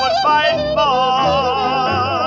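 1946 jump-blues recording of a blues shouter with a small band (trumpet, alto and tenor saxophones, piano, drums): a long note held with a wide, slow vibrato over the band's accompaniment.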